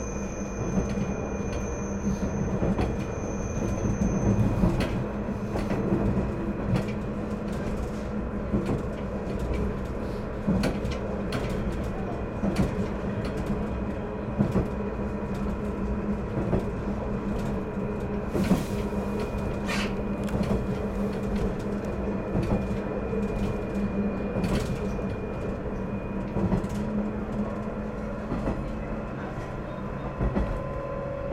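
KiHa 110 series diesel railcar running along the line, heard from inside the car: a steady diesel engine and drivetrain hum under irregular clicks and knocks from the wheels on the track. A thin high whine cuts out about four seconds in.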